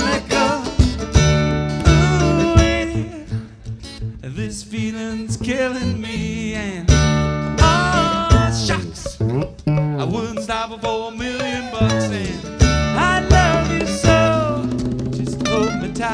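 Live country-style band playing an instrumental break between sung lines: guitar lead over stand-up bass and rhythm accompaniment.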